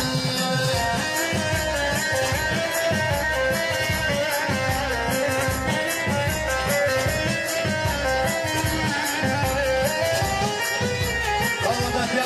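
Instrumental break in live Middle Eastern folk dance music: a Korg electronic keyboard plays a wavering, ornamented melody over a steady, evenly repeating drum beat, with no singing.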